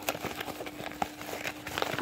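Paper mailer envelope crinkling and rustling as it is handled and pulled open by hand, with scattered small crackles.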